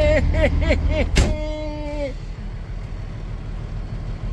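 A German Shepherd whining in a quick run of short rising-and-falling cries, then a sharp click about a second in, followed by one longer steady whine. Underneath is the low rumble of a semi truck's engine idling.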